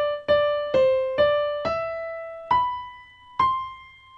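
Yamaha digital piano playing a slow right-hand melody one note at a time, with no chords. Several short notes come first, then two higher notes held about a second each in the second half.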